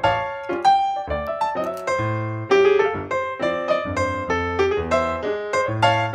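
Background piano music: a steady run of struck notes, each ringing and fading before the next.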